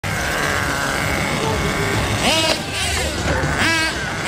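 HPI Trophy radio-controlled model car running across paving, its motor giving a steady high whine that fades about two seconds in. Voices call out twice in the second half.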